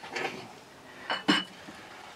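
Glassware clinking twice on a hard bar counter about a second in, the two knocks close together and followed by a brief ringing tone.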